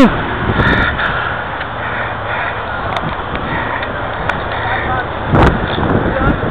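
Wind buffeting the microphone in strong gusty wind, a steady rushing noise with a louder gust about five seconds in.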